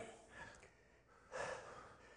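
A man breathing out hard through the mouth while straining to hold an isometric side-plank lateral raise: a short faint puff about half a second in, then a longer breath past the middle.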